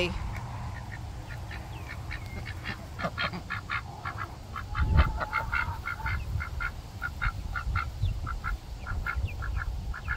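Domestic ducks making soft, rapid chattering calls, a string of short notes several a second, over a low rumble. There is a low thump about halfway through.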